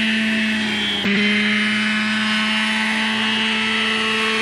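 Graupner Heli-Max 60 model helicopter's glow engine and rotor running in flight with a steady, high drone. About a second in the sound breaks briefly and then carries on at a slightly lower pitch.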